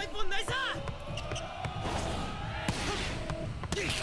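Anime soundtrack playing back quietly: a shouted line of dialogue, then a few sharp thuds of a volleyball being served and struck, over background music.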